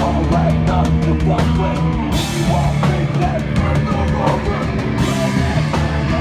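Hardcore punk band playing live: distorted guitar, bass and a pounding drum kit, with the vocalist shouting over them. Cymbals crash about two seconds in and again near the end.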